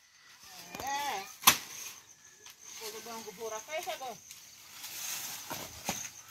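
Faint voices, a short call just before the first second and a few seconds of distant talk, with one sharp knock about one and a half seconds in.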